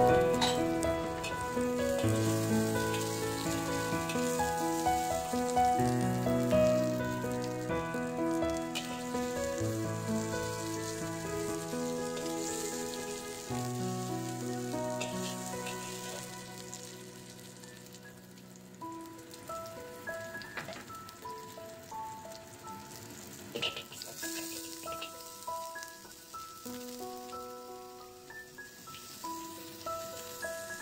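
Background music of held notes over garlic, ginger and star anise sizzling in oil in a hot wok, stirred with a metal spatula. The music gets quieter about two-thirds of the way through.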